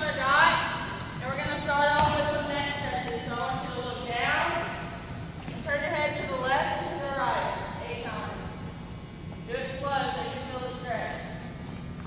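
Voices of a group talking and calling out in a large gymnasium, echoing off the hall, with one sharp thump about two seconds in.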